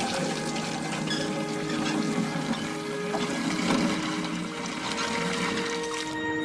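Running water with a steady rush, under soft background music of long sustained notes.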